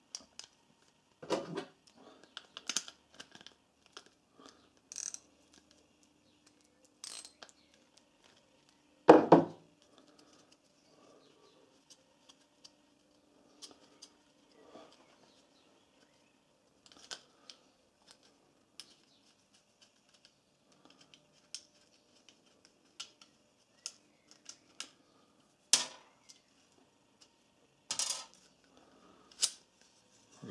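Hand tools and a steel welder earth clamp clicking and clinking as the clamp is worked off its ground cable, with scattered small taps and a single loud clank about nine seconds in, then two sharper knocks near the end.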